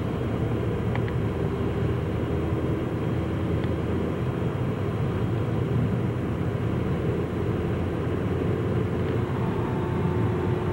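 Steady road and engine noise inside a moving car's cabin: an even low rumble of tyres on the road with the engine's hum beneath it.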